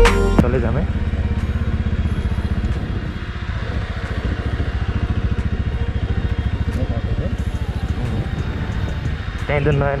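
Bajaj Pulsar NS200 motorcycle's single-cylinder engine running steadily under way, a close, even throb of firing pulses. Background music cuts off just as it begins.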